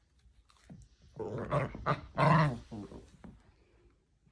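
Small dog growling in play as she chases her tail: two growls, about a second in and again about two seconds in.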